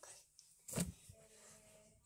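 A brief rustle of handling noise about three quarters of a second in, then only faint room sound, with a short spoken "evet".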